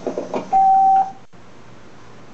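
A single steady electronic beep, about half a second long, with a few knocks just before it, over the hiss and hum of aged VHS tape playback. The sound drops out for a moment shortly after the beep, as the tape's signal breaks.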